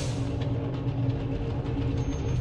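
Produced transition sound effect: a steady low mechanical rumble with a faint hum of level tones under it.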